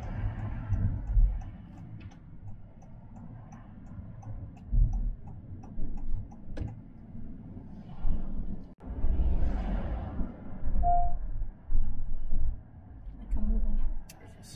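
Car turn indicator ticking at an even pace for the first few seconds, over the low rumble of the car's cabin. The rumble surges louder several times in the second half.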